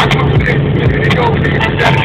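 Steady engine, tyre and wind drone inside an Audi A3 Sportback's cabin, cruising at about 200 km/h on cruise control, with music with vocals playing on the car stereo.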